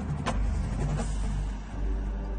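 Drum corps show music at a dark, low passage: a deep sustained rumbling bass drone, with two sharp percussion hits in the first second.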